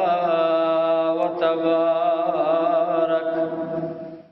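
A man's voice chanting a long, held melodic line with a wavering pitch. It fades away right at the end.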